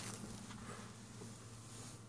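Faint room tone with a steady low hum, opening with one short click.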